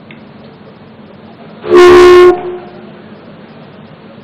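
A single loud, brief horn-like blast about two seconds in, one steady pitch lasting about half a second, over a low background hum.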